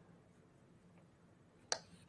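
Near silence with one short, sharp click near the end.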